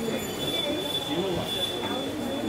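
Indistinct voices in the background, with a steady high-pitched tone holding underneath them.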